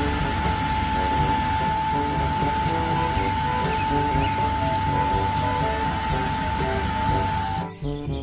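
Background music with one long held high tone over rows of short repeating notes, layered on a steady hiss; it all cuts off suddenly just before the end.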